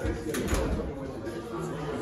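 A person's low voice murmuring, with a short held hum-like sound near the end and a few light clicks about half a second in.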